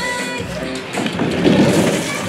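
Plastic wheels of a toy roller-coaster cart rumbling and rattling down its plastic track, loudest about a second in, with background music playing.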